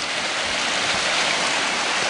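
Brook in flood: fast, swollen water rushing steadily past the bank.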